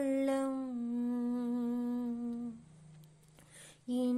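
A woman's voice singing a Tamil hymn unaccompanied, holding one long note that steps down slightly in pitch. It breaks off about two and a half seconds in for a short pause and breath, and the next phrase starts just at the end.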